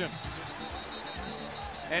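Stadium sound in a lull of the commentary: a wash of crowd noise with music from the stands over it and low drum thuds repeating under it.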